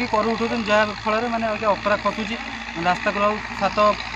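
A man speaking in a conversational voice, with a steady low hum beneath.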